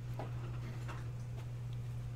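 Steady low hum with three faint light clicks in the first second and a half.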